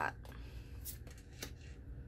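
Tarot cards handled over a wooden tabletop: a card drawn from the deck and laid down, with two short, soft card clicks about half a second apart in the middle.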